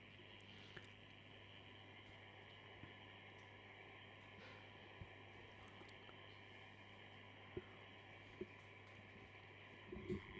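Near silence: faint steady low hum and hiss, with a few soft clicks, the most distinct two about seven and a half and eight and a half seconds in.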